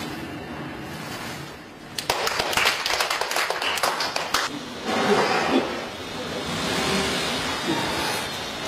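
A small crowd applauding: a dense patter of hand claps starting about two seconds in and lasting a couple of seconds, with a shorter burst of clapping shortly after.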